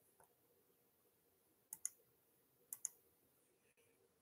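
Two quick double clicks about a second apart, in near silence.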